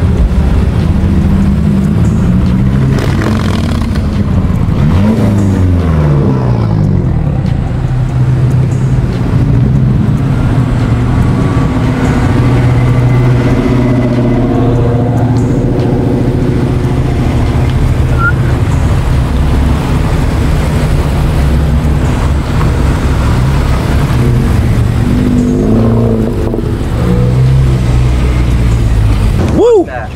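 Cars and a motorcycle driving past one after another at low speed, their engines revving as they pull away. There is a rising and falling sweep a few seconds in.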